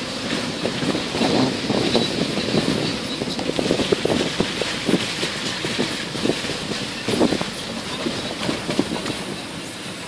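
Vehicle travelling over a rutted, muddy dirt road, its body and suspension rattling with dense, irregular knocks and clatters over steady road noise.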